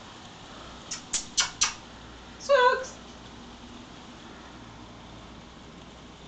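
Four quick sharp clicks, then a cat's single short meow, over a faint steady background hiss.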